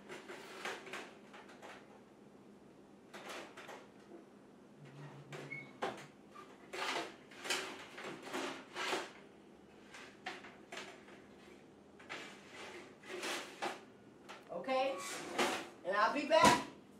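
Scattered clicks and metal knocks of a wall oven's door, rack and broiler pan being handled as the pan goes in under the broiler.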